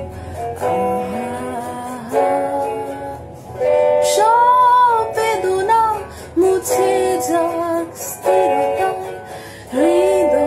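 A woman singing a Bengali song with guitar accompaniment, holding long notes that bend in pitch over steady strummed chords; the loudest sung phrase comes about four seconds in.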